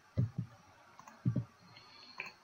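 Soft computer mouse clicks: a pair about a quarter second in and another pair just after a second in.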